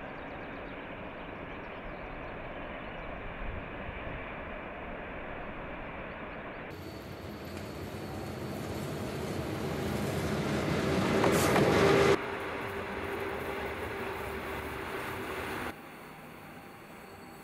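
Electric locomotive-hauled train approaching along the track, its running noise growing steadily louder for about five seconds as it nears, then cutting off suddenly. Before and after it, a steadier, quieter rumble of train running.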